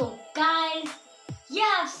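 A boy's voice in two short, drawn-out phrases, one about half a second in and one near the end.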